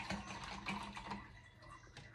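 Faint, irregular light clicks and taps of kitchen utensils and a cup being handled on a counter while a drink is mixed.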